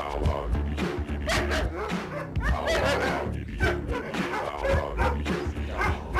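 A kennelled dog barking repeatedly over background music.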